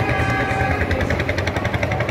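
Engines of slow-moving vehicles, an Iveco tow truck and a vintage Mercedes saloon, running at crawling speed: a steady low rumble with a fast, even pulse. A faint held higher tone sounds over it in the first second.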